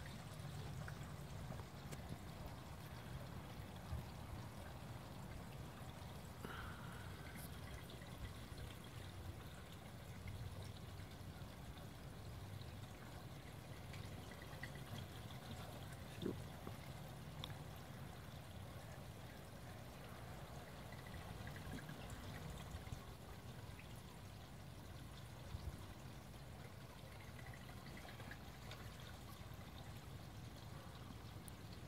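Faint, steady trickle of running water in an outdoor fish pond, with one soft knock about halfway through.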